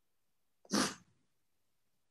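A single short, sharp sniffle from a person crying, about two-thirds of a second in.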